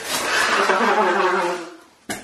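A man blowing his nose hard into a tissue: one long, loud blast lasting about a second and a half that tails off.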